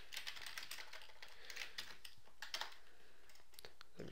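Computer keyboard typing: a run of quick, irregular keystrokes.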